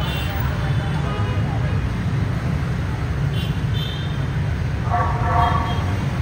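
Dense street traffic of motorbikes and cars, a steady low engine rumble throughout. Short high horn beeps sound about three and a half seconds in, and a louder horn sounds for about half a second near the end.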